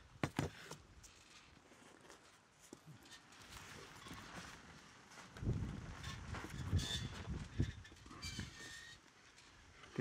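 Quiet handling sounds of hot-gluing feathers into a wooden block: a few sharp clicks early, then a longer patch of rubbing and scraping with small clicks in the second half as the hot glue gun is worked and the block and cardboard shift.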